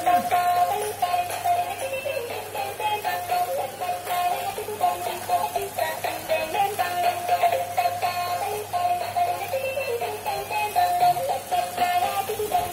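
Battery-powered dancing robot toy playing its built-in electronic melody, a simple synthetic tune stepping from note to note without a break.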